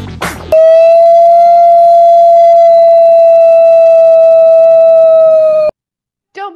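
Loud, steady electronic beep on one held pitch, lasting about five seconds and cutting off abruptly. The end of a music track is heard just before it.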